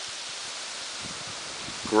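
Steady rushing of a river's current over shallow riffles, an even hiss with nothing else standing out.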